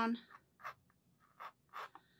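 Pencil scratching on a coated watercolor aqua board as a line is sketched: three short strokes.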